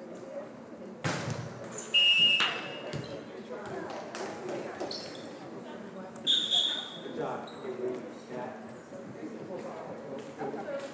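Volleyball rally in a gym: a sharp ball hit about a second in, then short high squeaks about two seconds in and again past six seconds, over a steady murmur of players' and spectators' voices echoing in the hall.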